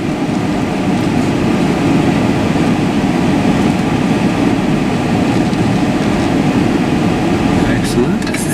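Steady low rumble of a vehicle's engine and road noise heard from inside the cab as it moves off slowly under light throttle.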